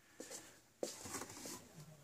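Faint handling noise from a handheld camera being carried: a couple of soft clicks and light rustling in a quiet room.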